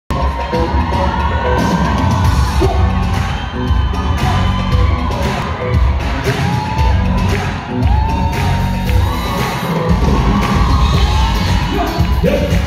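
Live band playing an up-tempo pop-rock song with a heavy bass and drum beat, with an audience cheering and shouting along.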